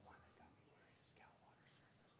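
Near silence: room tone with faint, indistinct speech, like low murmuring off-microphone.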